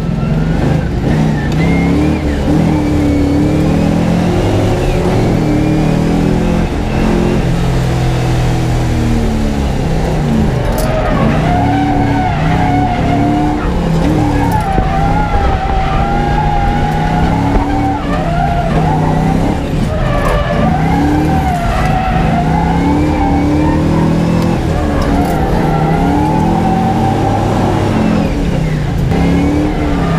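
A Nissan S13's engine heard from inside the cabin while drifting on track, its revs rising and falling over and over under hard throttle, with tyre squeal.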